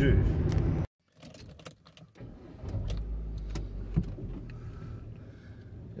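Engine and road noise inside a moving vehicle's cab, under the tail of a man's words, cut off abruptly about a second in. It is followed by a much quieter stretch of low engine hum with small clicks and rattles inside the cab.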